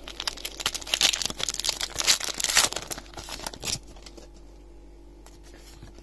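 Foil wrapper of a Pokémon trading card booster pack being torn open and crinkled by hand, a dense crackling that stops about four seconds in.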